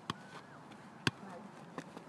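A football kicked twice by foot, two short sharp thuds about a second apart, the second louder, as the ball is flicked up and struck on the volley.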